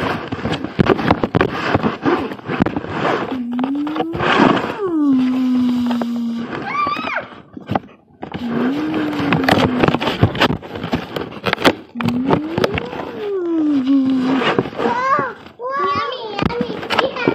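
A child making a vehicle engine noise with her voice: a low hummed 'vroom' that swoops up and back down, three times, with short higher squeaks in between. Constant rustling and clicking of plastic being handled runs underneath.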